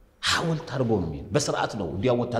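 Speech only: a man talking, starting about a quarter of a second in after a brief pause.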